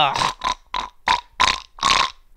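A man laughing: a run of about six short, breathy bursts, roughly three a second.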